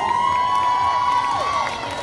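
Audience cheering: several high-pitched voices hold long overlapping "woo" calls that fall away at their ends, with some scattered clapping underneath.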